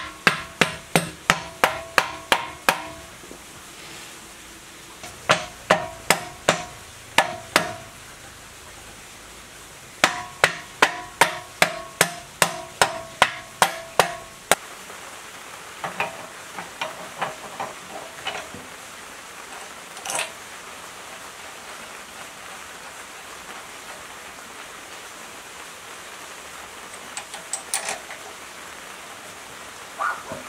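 Hammer blows on a long metal drift driven into a metal engine housing: three runs of quick, ringing metal-on-metal strikes, about three a second, the last run stopping about halfway through. After that, a few fainter scattered knocks and clinks of metal parts being handled.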